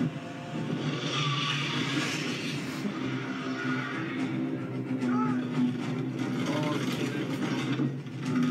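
Battle-scene soundtrack of a TV episode played through the speakers: a dense, steady wash of noise with a held low tone partway through.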